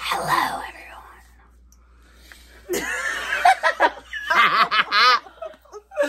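Several young women giggling and laughing in short bursts: once at the start, then again more strongly after a quiet couple of seconds.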